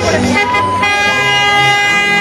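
Vehicle horns sounding from slowly passing caravan vehicles: held pitched tones, with a step down in pitch a little under a second in and a long steady note after it.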